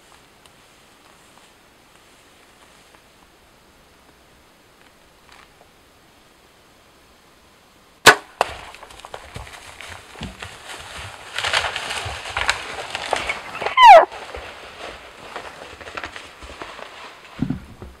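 A compound bow is shot about eight seconds in: a single sharp snap of the string and arrow. Several seconds of crashing and rustling follow as the hit elk runs off, then a short, loud call that falls in pitch.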